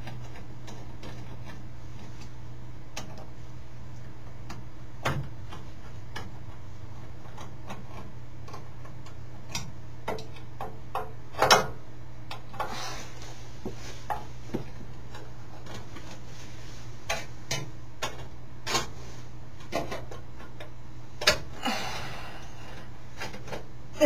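Scattered clicks and taps of screws and metal parts being handled as a part is unscrewed and taken off the top of a Pyrotronics System 3 fire alarm control panel, with the loudest knock about halfway through. A steady low hum runs underneath.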